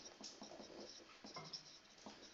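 Marker pen writing on a whiteboard: a faint run of short scratchy strokes as capital letters are written one after another.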